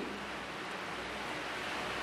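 Steady, even hiss of room tone with no distinct sound events.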